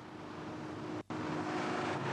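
Large sedan driving past at highway speed: steady engine and tyre noise that swells over the first second and a half, with a faint steady hum. The sound breaks off for an instant about a second in.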